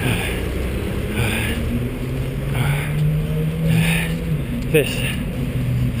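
Steady road-traffic rumble, with one vehicle's engine drone standing out for a couple of seconds in the middle. A soft swish recurs about every second and a half.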